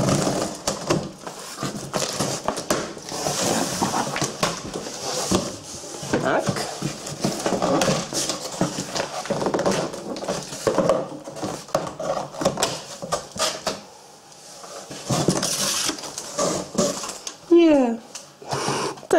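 A large corrugated cardboard box being opened by hand: the cardboard rustles and scrapes as the flaps are pulled back, with two longer ripping noises, one a few seconds in and one near the end.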